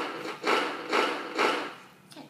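Electronic keyboard sounding four unpitched, noisy notes in a steady rhythm about half a second apart, each dying away quickly.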